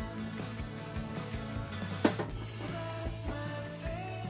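Background music plays throughout. A single sharp knock sounds about halfway through.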